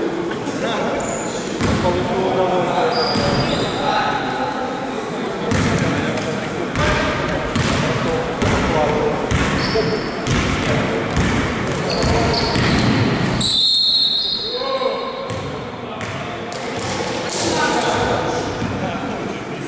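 A basketball being dribbled on a sports-hall floor, bouncing repeatedly, with indistinct voices of players and onlookers echoing through the large hall.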